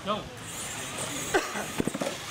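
People talking and laughing, with a sharp knock about a second and a half in and a quick cluster of short sharp sounds near the end.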